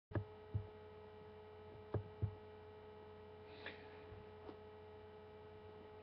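Faint steady electrical hum with several thin steady tones above it, broken by four short knocks in the first two and a half seconds and two fainter ones later.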